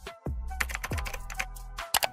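Short music sting with a sustained bass note and falling pitch sweeps, under a quick run of computer-keyboard typing clicks used as a sound effect.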